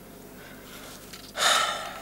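Quiet room tone, then about one and a half seconds in a distressed man's sudden heavy breath that fades over half a second.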